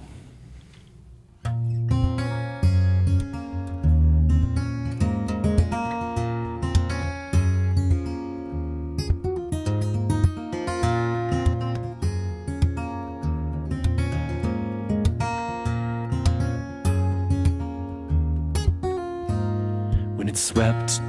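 Solo acoustic guitar played by plucking, starting about a second and a half in, with low bass notes repeating under higher melody notes: the instrumental introduction to a song, before the singing comes in.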